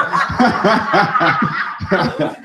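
A man laughing into a handheld microphone: a quick run of short chuckles.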